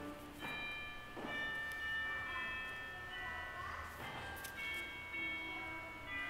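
Church organ playing soft, high sustained notes, a few at a time, changing every second or so, just after a loud passage has ended.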